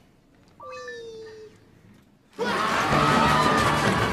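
A single short pitched cry that slides down and holds, then, about two and a half seconds in, loud music bursts in abruptly along with the commotion of a brawl.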